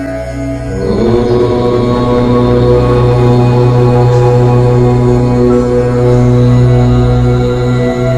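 A long chanted "Om" starts about a second in and is held as one steady tone over a low sustained drone of ambient meditation music.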